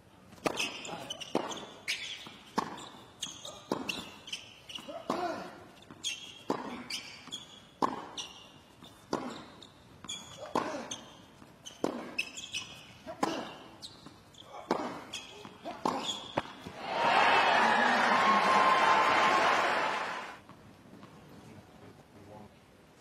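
Tennis ball struck and bouncing in a long rally on a hard court, a sharp hit or bounce about every second. About seventeen seconds in the rally ends and the crowd applauds and cheers for about three seconds, louder than the rally.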